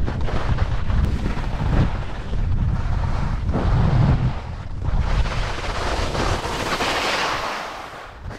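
Wind buffeting the action camera's microphone during a ski run, mixed with the hiss of skis sliding over snow. The ski hiss swells about six to seven seconds in as the skier skids to a stop, then fades near the end.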